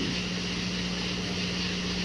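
A steady low hum under a constant even hiss, with no voice or other event.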